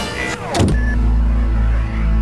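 A falling electronic sweep lasting about half a second, then a deep, steady synthesized drone from an ambient sci-fi soundtrack.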